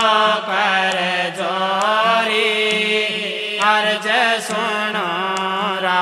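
Devotional aarti chant sung as a slow, ornamented melody over a steady low drone, with light percussion strikes now and then.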